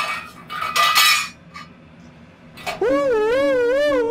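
A metal lid clattering onto a stainless steel saucepan to smother a burning oil fire, with a short metallic ring, in two bursts during the first second. About three seconds in, a loud warbling siren-like warning tone starts and holds.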